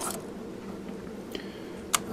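Low steady room noise with faint handling sounds as a small circuit board with its motor is picked up and turned over, and one sharp click just before the end.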